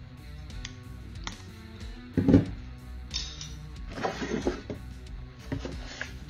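Background guitar music, with a few light clicks and a louder thump about two seconds in, and brief rustling, as the box contents are handled.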